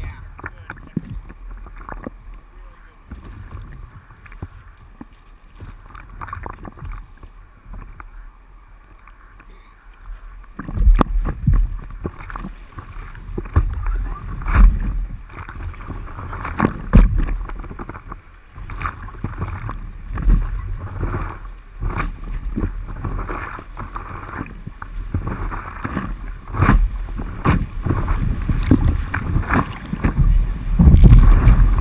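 River water splashing and slapping against the nose of a stand-up paddleboard, with paddle strokes in the water. About a third of the way in it turns louder and choppier, with irregular low thumps, as the board moves into rougher water toward a rapid.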